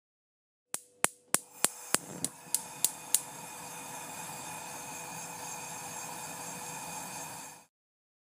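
Logo intro sound effect: about nine sharp clicks, roughly three a second, over a steady noisy wash with a faint held tone. It cuts off suddenly near the end.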